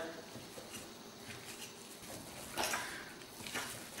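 Faint, soft squishing and stirring of a cream cheese, mozzarella and herb filling being mixed in a glass bowl, with one slightly louder moment about two and a half seconds in.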